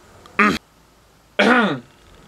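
Two short, loud wordless vocal bursts from a young man, about a second apart, the second sliding down in pitch.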